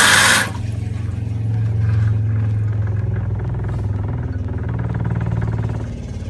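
Water rushing out of an opened drain tap into a bucket stops about half a second in. Then the van's 12-volt fresh-water pump runs with a steady low hum and a fast, even pulse, refilling and re-pressurising the water system after water was drawn off.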